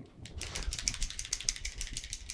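A paint marker being shaken, its mixing ball rattling inside the barrel in quick, even clicks about ten a second, which starts about half a second in.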